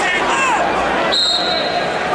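Crowd din in a large arena, with shouting voices. About halfway through, a long steady, high whistle blast starts: a referee's whistle.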